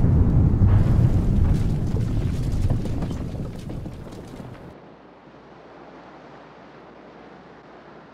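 The deep rumble of a motorboat explosion dying away, with scattered crackles, fading over about four seconds to a faint wash of sea waves.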